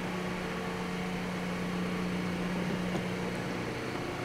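2012 Mazda3's four-cylinder engine idling, heard from outside at the front of the car: a steady, even hum whose low tone drops away near the end.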